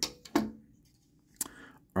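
Hard plastic clicks as parts of a Transformers action figure are unplugged and moved by hand: a sharp click at the start, a softer one just after, and another sharp click about a second and a half in.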